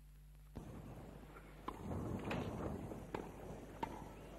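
Tennis ball struck back and forth in a rally: a few sharp pocks, the clearest two about three seconds in, over crowd noise that comes in about half a second in and grows louder near the middle.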